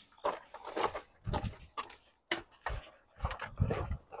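Footsteps crunching on a crushed-gravel path, a string of irregular short crunches.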